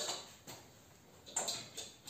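A few faint clicks and light knocks over quiet workshop room tone: one about half a second in, and a few more in the second half.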